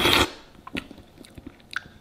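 A person taking a soft spherified gel blob into the mouth with a short slurp, then chewing it with faint, wet mouth clicks.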